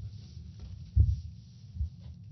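Two low, muffled thumps from players getting up and leaving a press-conference table, a strong one about a second in and a smaller one near the end, over a steady low hum.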